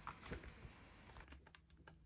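Faint handling of a stapled paper colouring book: a soft rustle as it is picked up, then a quick run of small paper ticks as the pages are flipped.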